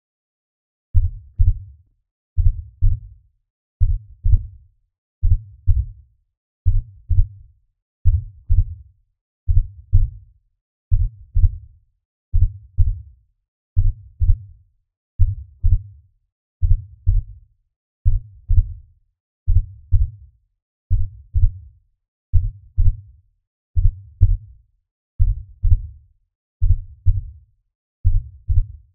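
A slow heartbeat sound effect: deep double thumps, lub-dub, repeating steadily about every second and a half, starting about a second in.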